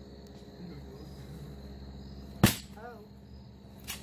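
An aluminium-framed folding lawn chair slammed down hard, giving two sharp impacts about a second and a half apart.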